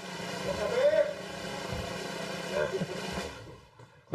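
Indistinct voices talking off-microphone over a steady hiss; the sound drops away shortly before the end.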